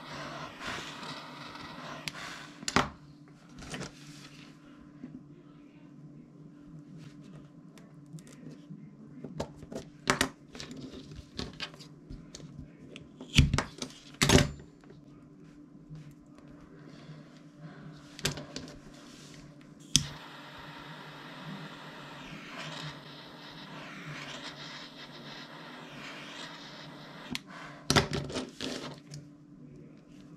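Paracord crafting handling sounds: scissors snipping cord ends and tools knocking on a cutting mat, heard as several separate sharp clicks over a steady low hum.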